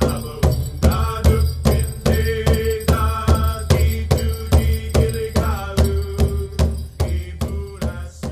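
Drum song: a steady drumbeat, about three beats a second, under a chanted sung line, starting to fade near the end.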